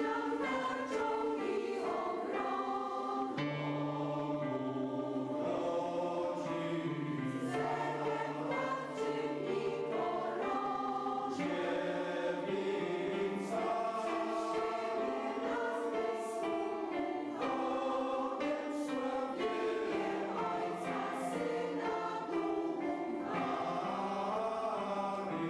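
Senior mixed choir of women and men singing together, sustained choral chords with no break.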